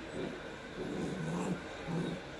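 A sheltie and a rough collie puppy playing, with short, low growls about a second in and again near the end.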